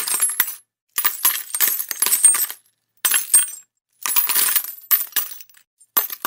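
Metal coins clinking and jingling in four bursts, each a half second to a second and a half long, with short silent gaps between them.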